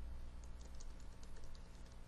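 Faint typing on a computer keyboard: a quick run of light key clicks as a search query is typed.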